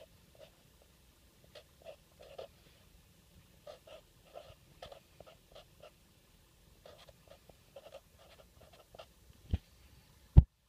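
Sharpie Twin Tip felt-tip marker writing on cardboard: faint, short scratching strokes as the letters are drawn, with one sharp knock near the end.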